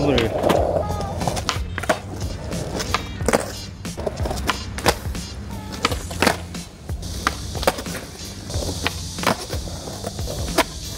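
Skateboard flip tricks such as kickflips on flat stone paving: repeated sharp clacks of the tail popping and the board landing, with the wheels rolling in between, over background music.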